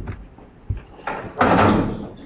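A single sharp knock, then about half a second later a louder rush of noise lasting about half a second, the loudest sound here.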